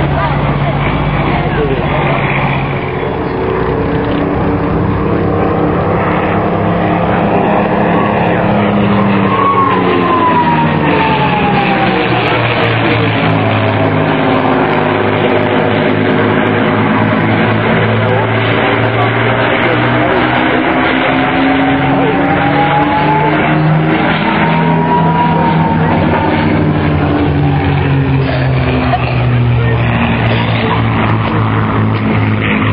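Vintage piston-engined warbirds flying past: a steady, many-toned propeller-engine drone that slides down in pitch and then climbs again as the aircraft pass and turn.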